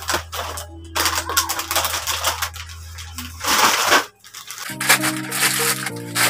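Plastic snack wrappers crinkling and rustling in several short bursts as packets are handled, over background music whose held chords come in clearer near the end.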